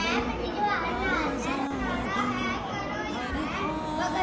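A child speaking, with other children's voices in the background.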